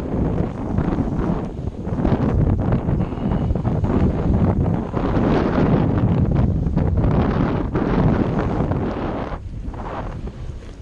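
Wind buffeting the microphone: a loud, uneven rumble that swells and dips in gusts.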